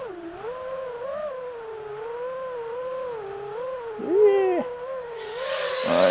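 Brushless electric motor and propeller of an FPV aircraft in flight: a steady whine whose pitch wavers up and down with the throttle.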